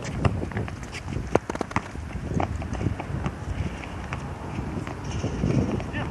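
Quick footsteps and sneaker scuffs on a hard court surface, a scatter of sharp taps, densest in the first couple of seconds. Wind rumbles on the microphone throughout.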